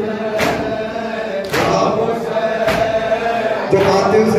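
Group of men chanting a noha in chorus, led over a microphone, with rhythmic matam chest-beating strikes landing about once a second, four times.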